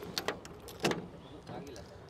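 A few short, sharp clicks from the rear door handle and latch of a Force Tempo Traveller van being worked by hand: two quick ones near the start and a louder one about a second in.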